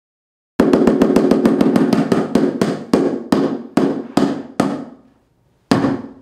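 A drum struck in a fast roll that slows down and fades, about seven strokes a second easing to about two, then one more firm hit near the end after a short pause.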